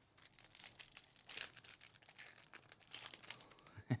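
Foil wrapper of a Panini Mosaic basketball card pack being crinkled and torn open by hand, with an irregular run of crackles as the cards are pulled out.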